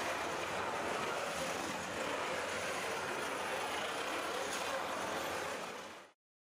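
FRC swerve drive robot running its drive motors as it moves across the floor: a steady whir that fades out near the end.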